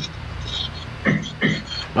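Low steady background hum with a few brief, faint voice sounds about a second in, heard over a video call.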